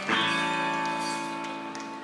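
Electric guitar chord strummed once, then left ringing and slowly fading.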